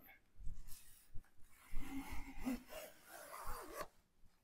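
Wooden sliding pizza peel scraping and rubbing across a floured countertop in a series of uneven strokes as it is worked under a pizza.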